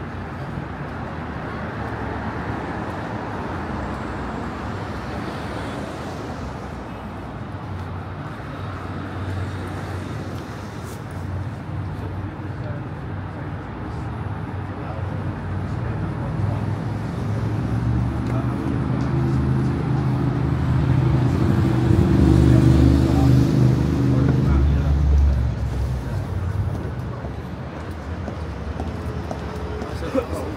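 Steady road traffic on a city street. From about halfway a heavy vehicle's engine grows louder, is loudest about three-quarters of the way in, then fades.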